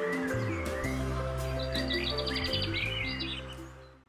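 Closing background music of sustained bass and chord notes, with bird-like chirps and a quick trill above it, fading out near the end.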